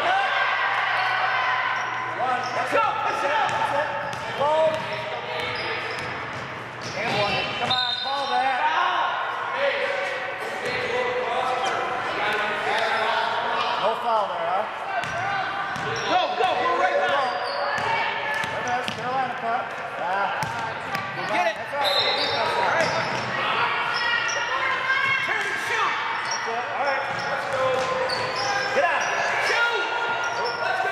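Live sound of a basketball game on a hardwood gym court: the ball being dribbled and bouncing, with a steady layer of players' and spectators' voices echoing in the hall.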